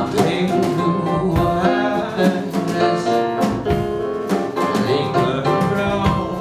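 Live piano playing with a man singing along, a song in full flow with steady chords and sung melody.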